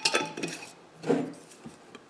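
Glass mason jars with metal screw lids clinking and knocking as they are picked up off a wooden table: a sharp ringing clink at the start, then a few lighter knocks.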